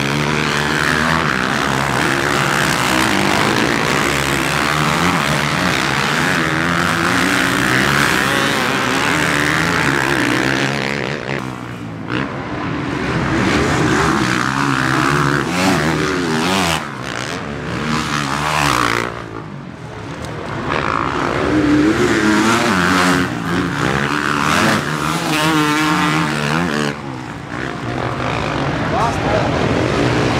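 Several motocross dirt bikes racing, their engines revving up and down as they accelerate out of turns and climb a hill. The sound fades briefly a few times as the bikes pass by.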